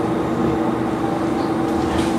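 Steady hum of a stopped Izukyu Resort 21 electric train's onboard equipment, heard inside the driver's cab: one constant tone over a low, even noise, with a few faint clicks.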